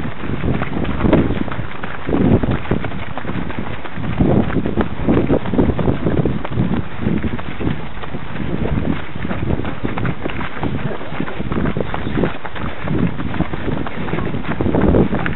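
Running footsteps of a pack of runners on a dirt and grass path, a rhythmic patter of thuds, with wind buffeting the microphone of the runner's camera.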